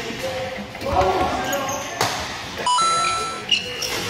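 Badminton rally on an indoor court: sharp racket hits on the shuttlecock about half way through and again near the end, with short squeaks of shoes on the court floor, in a hall that echoes. A brief electronic tone, added in editing, sounds a little after the midpoint.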